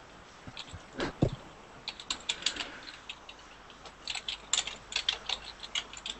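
Computer keyboard being typed on, picked up over a video-call microphone: a short run of rapid key clicks about two seconds in, then a longer run from about four seconds in to near the end. A single dull knock comes about a second in.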